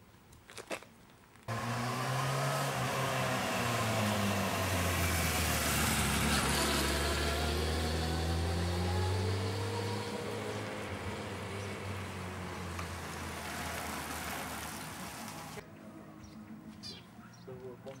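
A motor vehicle's engine, loud and close, its note sliding up and down over a rush of noise. It cuts in abruptly about a second and a half in and cuts out abruptly a couple of seconds before the end.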